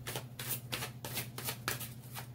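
A deck of reading cards being shuffled by hand: a quick run of soft slaps, about five or six a second, over a faint steady low hum.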